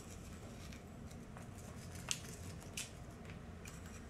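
Faint light patter and ticks of crushed candy cane sprinkled by hand from a small ramekin onto chocolate-covered crackers, with two slightly sharper clicks a little after two seconds and near three seconds.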